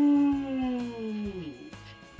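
One long howling cry that slides slowly down in pitch and fades out about a second and a half in, over background music.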